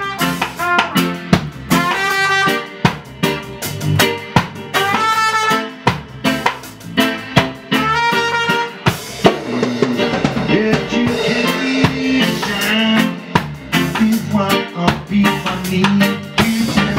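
Live band playing: a trumpet plays a melody over a drum kit, with snare and rimshot hits keeping the beat. About halfway through the high trumpet lines fall away and the lower band parts carry on.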